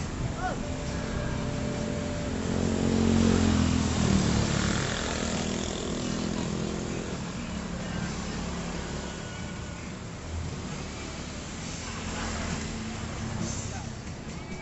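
Small motorcycles passing along a road, with a steady background of engine noise. The loudest goes by about three seconds in, its engine pitch dropping as it passes.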